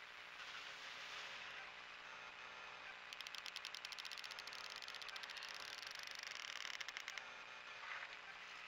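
A rapid, even run of mechanical clicks, starting about three seconds in and stopping about four seconds later, over a steady hiss and a faint low hum.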